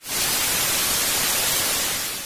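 TV-static sound effect: a loud, steady hiss of white noise that cuts in abruptly and eases off slightly near the end.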